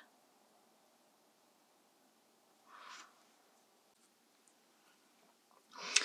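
Near silence, broken about halfway through by one faint, soft swish lasting about half a second. A short rush of noise builds just before the end.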